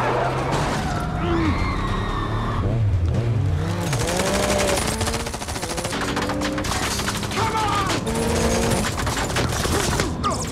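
Movie chase soundtrack: rapid automatic gunfire, growing denser about four seconds in, over the rising and falling revs of motorbike and car engines.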